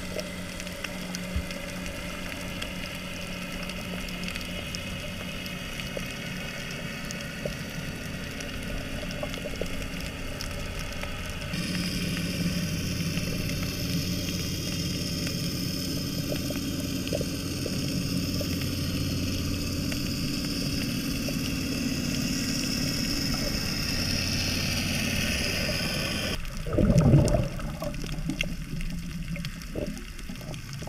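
Underwater ambience picked up by a camera held below the sea surface: a steady low hum under a hissing, crackling water bed, which steps louder and brighter about a third of the way in. Near the end a brief, louder rush of water.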